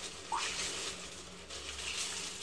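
Quiet handling of a wet mesh bag of ceramic biological filter rings, with faint water sounds and one brief small sound about a third of a second in.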